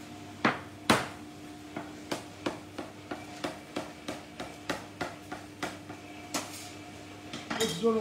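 Knife blade striking a stainless-steel worktop as a rope of dough is chopped into small pieces: a series of sharp, irregular clicks, about two to three a second.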